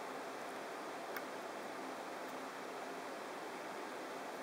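Low steady hiss of room tone and recording noise, with one faint tick about a second in.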